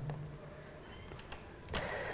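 A pause in speech with quiet room tone. A brief low hum fades out just at the start, a few faint clicks come about halfway, and a soft rush of noise rises near the end.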